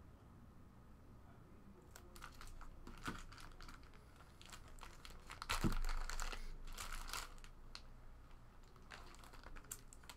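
Plastic packaging crinkling and rustling as a trading card is worked out of a black glossy pack, starting about two seconds in and busiest around the middle, with one soft knock against the table.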